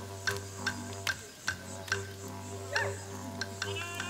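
Kunborrk ceremonial song accompaniment: clapsticks struck in a steady beat about three times a second over a continuous didgeridoo drone.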